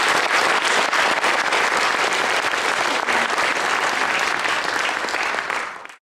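Audience applauding steadily with dense clapping right after a sung piece ends, tapering off in the last half second.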